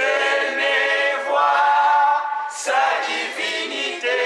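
Voices singing a cappella together, without instruments, in long held phrases with short pauses between them.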